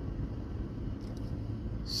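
Steady low rumble inside a car's cabin from its running engine.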